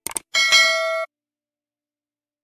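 Two quick clicks, then a bright bell-like ding with several ringing pitches that cuts off abruptly after well under a second: a subscribe-button and notification-bell click sound effect.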